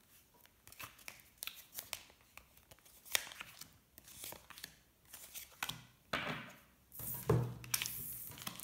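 Tarot cards being handled and laid out on a table: a run of short, crisp snaps, flicks and slides of card stock, busiest in the last couple of seconds.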